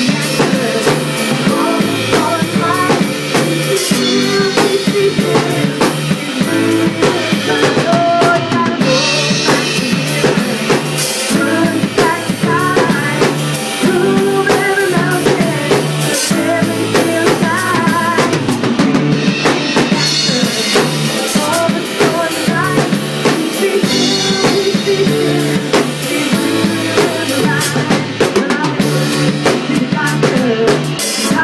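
An acoustic drum kit played steadily in a song groove, with snare, bass drum and Sabian AA cymbals, and cymbal crashes several times. It plays over a recorded song with sustained bass and other pitched parts.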